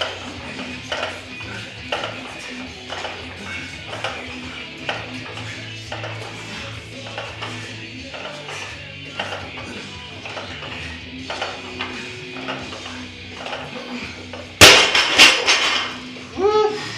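Background music with a steady beat. About 14.5 seconds in comes a loud crash from a loaded barbell with bumper plates dropped onto the rubber gym floor, followed by a few quick bounces.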